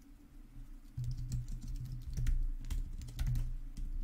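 Typing on a computer keyboard: a quick, irregular run of key clicks that starts about a second in.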